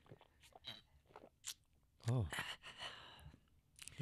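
A man drinking from a plastic water bottle: faint sips, swallows and small clicks of the bottle over the first two seconds, then a spoken "Oh."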